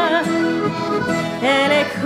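Two piano accordions playing sustained chords as song accompaniment between sung lines. A singer's held note with vibrato trails off just at the start, and another sung note comes in about one and a half seconds in.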